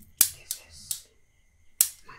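Sharp tapping on a small hard plastic object held close to a microphone, as an ASMR trigger: four quick crisp taps, the loudest just after the start and another strong one near the end.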